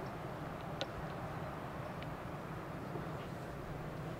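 Quiet outdoor ambience from a golf course: a steady low hiss and rumble with a couple of faint ticks.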